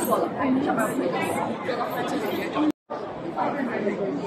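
Many visitors chattering at once in a large indoor hall, a steady babble of overlapping voices. It cuts out to silence for a moment a little under three seconds in, then carries on slightly quieter.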